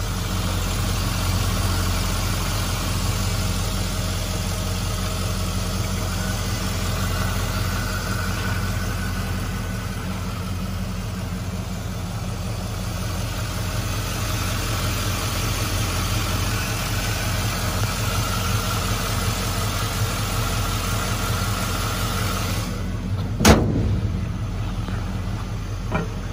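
LS V8 engine in a 1955 Chevrolet Bel Air idling steadily. Near the end, one loud thud as the hood is shut.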